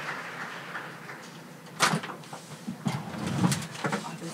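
Noise of a conference hall as people move, with a few sharp knocks: one about two seconds in and several near the end, the last ones the loudest.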